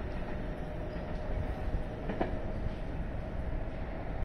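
Electric train running along the tracks at a distance: a steady rumble of wheels on rail with a faint steady whine, and a single clack about two seconds in.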